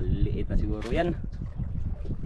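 A person's voice: two short sounds whose pitch bends, in the first second, then a steady low rumble of wind and sea noise on the microphone.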